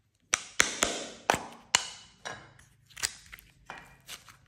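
Hard plastic popsicle-shaped case being handled and prised open: a run of about eight sharp clicks and taps, loudest in the first two seconds and growing fainter.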